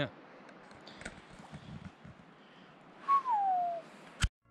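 A single loud whistle that glides down in pitch, about three seconds in, over faint outdoor background noise.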